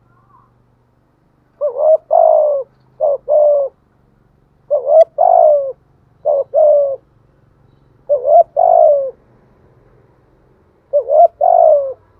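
Spotted dove cooing, close by: six two-note coos, each a short note followed by a longer one, coming every one and a half to three seconds.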